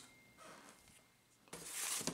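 A bagged comic book sliding down into an empty cardboard comic box: a short scraping rustle of plastic and board against cardboard that starts suddenly about one and a half seconds in.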